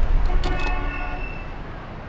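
The tail of a radio-show outro sting: a deep low hit rings out with a few horn-like held tones and fades away steadily.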